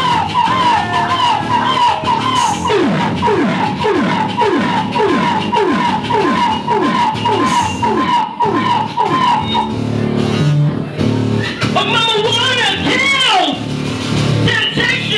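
Live electronic band music led by synthesizers: a wobbling synth riff repeats about twice a second, and from about three seconds in it is joined by a repeated falling pitch sweep. Near the end the riff drops out and gives way to bending high tones.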